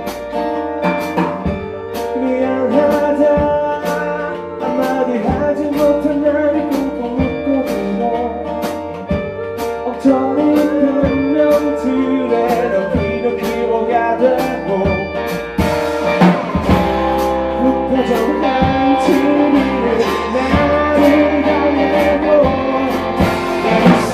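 Live acoustic band music: acoustic guitars, a bass guitar and a male voice singing, over steady percussive ticks. The playing grows fuller and louder about sixteen seconds in.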